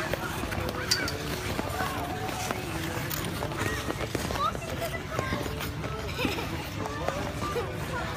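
Ice rink hubbub: scattered voices, calls and short shrieks of skating children and adults, with no single dominant sound, over a steady low rumble.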